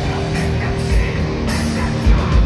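Heavy metal band playing live, heard from the crowd: distorted electric guitar and bass over a drum kit keeping a steady beat.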